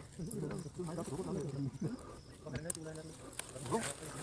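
Faint background voices of people talking, well below the narration level, with a few sharp clicks in the second half.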